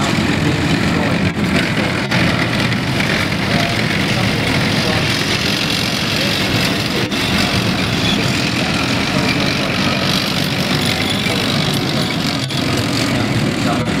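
M548 tracked cargo carriers and FV432 APCs driving past on a dirt track, their engines and running gear making a steady loud noise, with a few brief clicks.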